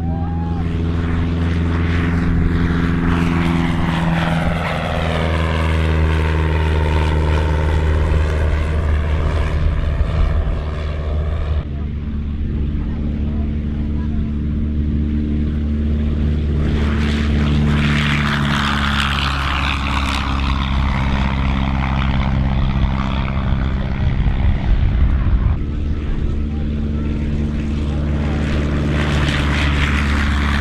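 Light single-engine piston propeller aircraft running at power in low flypasts and a take-off, a steady engine drone. Twice the tone sweeps round as a plane passes close by.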